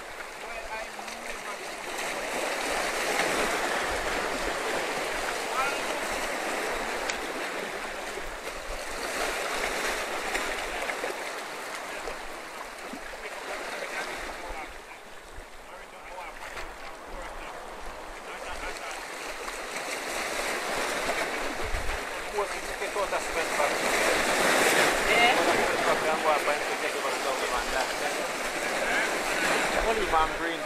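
Surf washing over and breaking against shoreline rocks, swelling and ebbing in slow surges, loudest about three-quarters of the way through.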